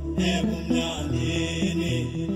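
Amapiano dance music playing from a DJ mix: a deep sustained bass line under short, evenly repeating keyboard chords.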